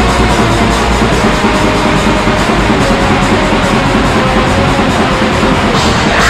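Raw black metal: a loud, dense wall of distorted guitar and drums.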